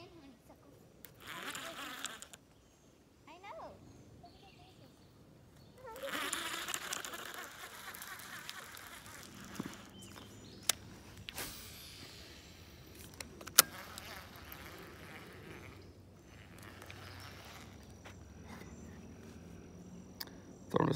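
A baitcasting rod and reel being handled and worked, faint overall. Rustling and knocks come near the start, then a whirring, hissy stretch of several seconds from the middle, and a few sharp clicks after it.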